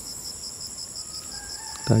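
Steady high-pitched chorus of insects, with one high trill pulsing about four to five times a second. A faint drawn-out call sounds in the second half.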